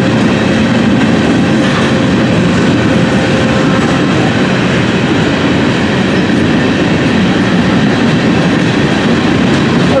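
A string of ballast hopper cars on a freight work train rolling past: a loud, steady rumble and clatter of steel wheels on the rails.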